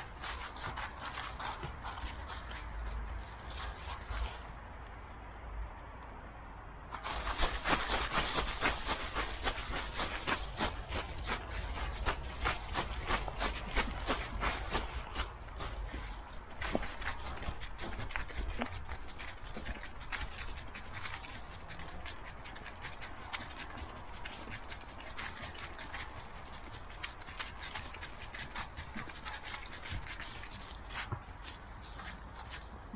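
Dry fallen leaves crunching and rustling under a dog's paws as it walks, a dense irregular crackle that grows louder about a quarter of the way in and eases off over the second half.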